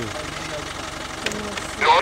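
A vehicle engine idling with a steady low rumble, under quiet voices; a louder voice starts near the end.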